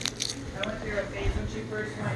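Faint voices in the background with close handling noise from the phone: rubbing and a couple of sharp clicks as a hand covers and moves it.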